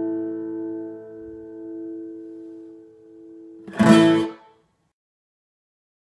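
Steel-string acoustic guitar's final chord ringing out and slowly fading. About four seconds in comes a short, loud burst from the strings, the loudest moment, and then the sound cuts off suddenly.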